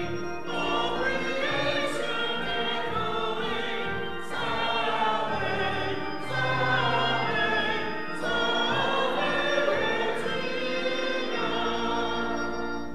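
Church choir singing a slow hymn in sustained phrases, with an organ holding long low notes beneath.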